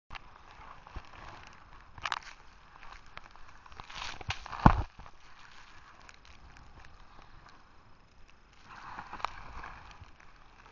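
Snowboard sliding through powder snow: a hiss of snow against the board that swells and fades several times, with the loudest rush about halfway through.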